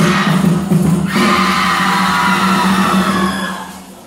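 A crowd of cheer supporters singing a cheer song in unison, ending on a long held note that fades out about three and a half seconds in.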